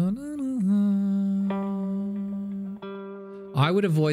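A man humming a note, sliding up into it and holding it steadily, while single notes are plucked twice on a Fender Telecaster electric guitar. Speech starts near the end.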